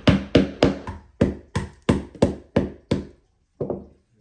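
A hammer driving small nails into a thin wooden kit board: about ten quick, sharp blows at roughly three a second, a short pause, then one last blow near the end.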